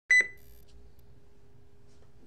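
An electronic device gives a short, sharp double beep right at the start, high-pitched and loud, then only a faint steady hum remains.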